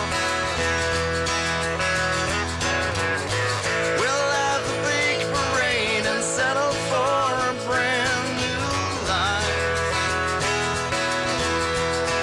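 A small live band plays an instrumental passage on acoustic and electric guitars. Around the middle a lead line of wavering, bending notes rides over the sustained chords.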